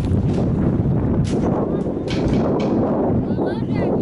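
Wind buffeting the microphone: a loud, steady low rumble, with a few faint voices shouting briefly near the end.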